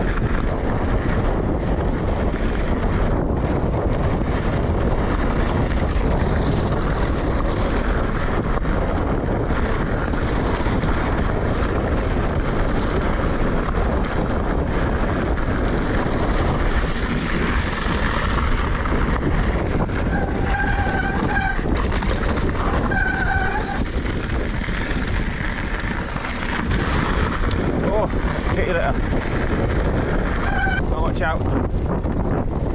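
Wind buffeting a GoPro Hero 9's microphone over the steady rumble of a Pace RC295 mountain bike's tyres rolling down a gravel singletrack. Two short high tones sound about twenty and twenty-three seconds in.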